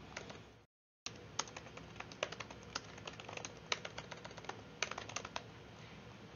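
Typing on a computer keyboard: a faint run of irregular key clicks as a phrase is typed, with a brief complete dropout in the audio a little before one second in.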